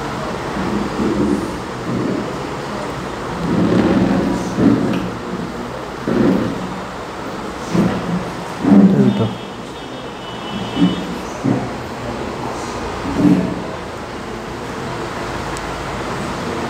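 A steady background rumble with a dozen or so irregular, muffled low sounds scattered through it, some of them like faint, indistinct voices.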